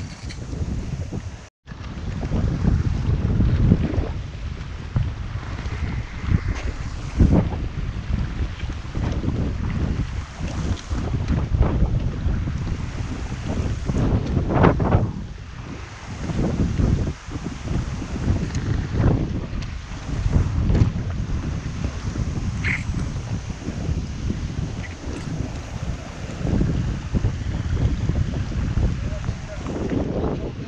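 Wind buffeting the camera microphone in uneven gusts, over the rush of a shallow river. The sound cuts out completely for a moment about a second and a half in.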